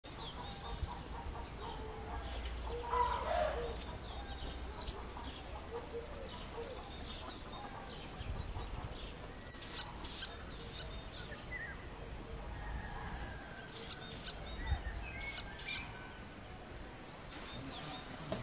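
Songbirds chirping and singing throughout, with a louder chicken call about three seconds in.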